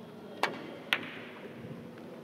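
Carom billiard balls in a three-cushion shot: a sharp click of the cue tip striking the cue ball, then about half a second later a louder click of the cue ball striking another ball.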